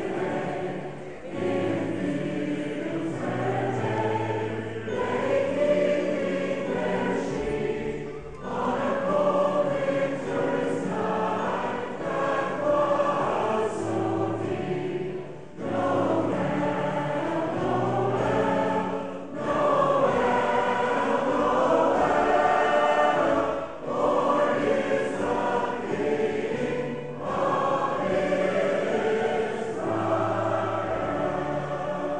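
Community choir singing a well-known Christmas carol, phrase after phrase, with short pauses for breath between the lines.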